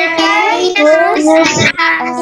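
A child singing a Christmas song in long held notes, breaking off briefly near the end.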